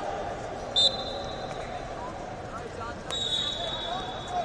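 Referee whistles over the chatter of a busy wrestling hall: one short, sharp blast just under a second in, then a longer blast starting about three seconds in.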